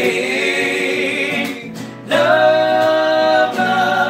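Two acoustic guitars played under male voices singing in harmony, with a long held note beginning about halfway through.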